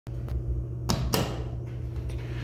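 Elevator doors of a 1991 Dover traction elevator opening: a couple of knocks and clunks about a second in, over a steady low hum.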